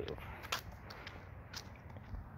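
Footsteps on a concrete path: a few faint, sharp steps over a low background.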